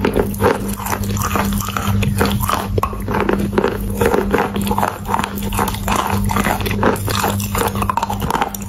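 Close-up crunching as a chunk of chalk is bitten and chewed, many short irregular crunches, with a steady low hum underneath.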